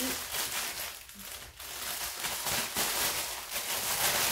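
Thin plastic mailing bag crinkling and rustling irregularly as it is handled and cut open with scissors.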